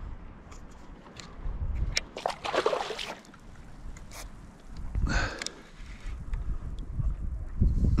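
Water sloshing against the hull of a sit-on-top kayak, with low wind rumble on the microphone, a few short clicks and knocks, and two brief louder swishes about two and a half and five seconds in.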